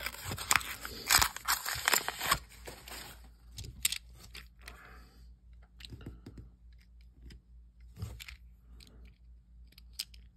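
Paper coin-roll wrapper tearing and crinkling for about the first two and a half seconds. Then come scattered light clicks of half-dollar coins knocking together as a stack is handled and the coins are slid off one by one.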